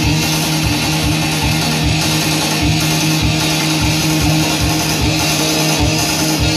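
Live rock band with loud electric guitars holding sustained notes over a quick, steady low beat.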